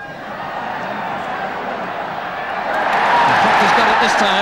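A large cricket crowd cheering, the noise swelling steadily to its loudest near the end as the winning hit of the match is celebrated.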